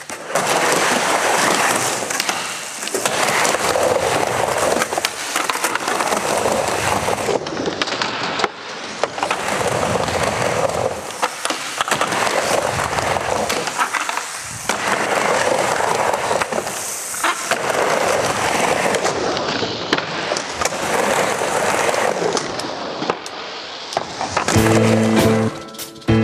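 Skateboard wheels rolling hard over pavement or a ramp, swelling and fading every few seconds, with the sharp clacks of the board popping and landing. Music comes in near the end.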